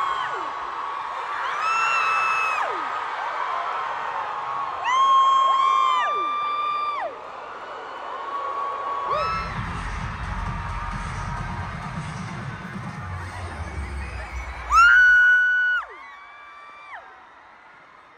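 Live arena concert sound: music with high held tones that glide down at their ends, over a cheering crowd, with a deep bass rumble from about nine to sixteen seconds in. A loud burst comes about fifteen seconds in, and then the sound dies down.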